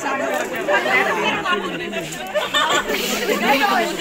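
Many people talking over one another: a lively chatter of overlapping voices, no single speaker standing out.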